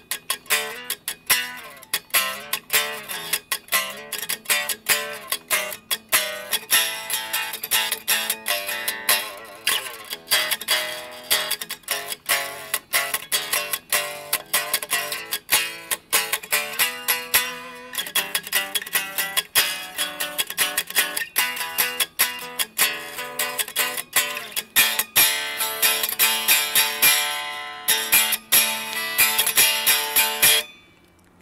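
Mensinger Foreigner electric guitar with humbucker pickups, played with a pick: a continuous run of quickly picked notes with many attacks each second.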